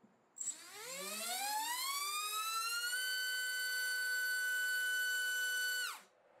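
BrotherHobby R5 2306 2450KV brushless motor driving a three-blade HQ 5040 propeller on a thrust stand. It starts with a brief burst, spins up with a rising whine over about two and a half seconds, holds steady at full throttle near 30,000 rpm, then cuts off suddenly near the end.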